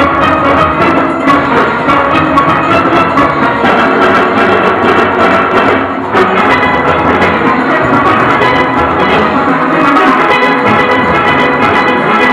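Steel orchestra playing a full, dense arrangement on many steelpans, with drums and percussion keeping the rhythm; the sound dips briefly about six seconds in.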